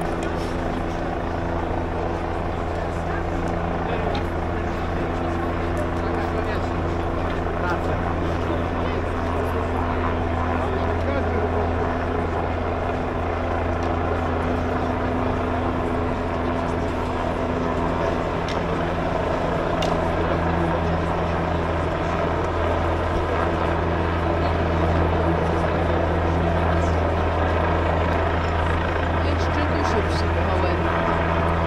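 A steady, low engine drone holding several constant tones, under the continuous murmur of a large outdoor crowd.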